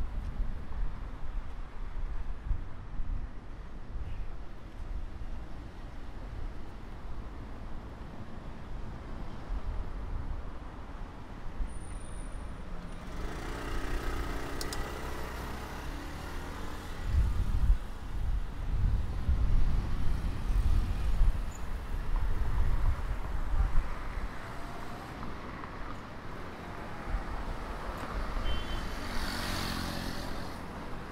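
Street traffic with cars and motorcycles passing, and gusty wind rumbling on the microphone. A louder vehicle passes about halfway through.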